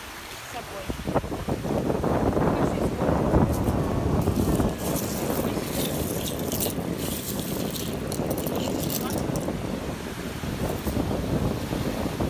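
Small waves washing up on a sandy shore with wind on the microphone. From about four to nine seconds in, a run of light, high clicks: seashells clinking against each other as a hand rummages through a mesh bag of them.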